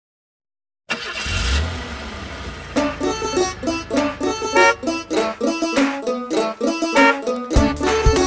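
Silence for about a second, then a cartoon vehicle-engine sound effect with a low rumble, the bus starting up. From about three seconds in, an upbeat children's instrumental tune with short picked notes takes over, with a low beat joining near the end.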